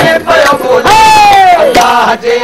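Men's voices chanting loudly together in a Sufi devotional call, with a long held shout about a second in that slides down in pitch. Sharp strokes are scattered through the chant.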